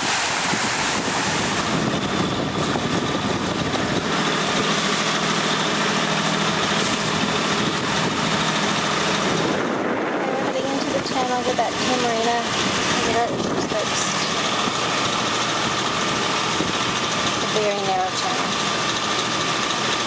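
A sailboat's inboard engine running steadily under wind and water noise, with brief voices a little after halfway and near the end.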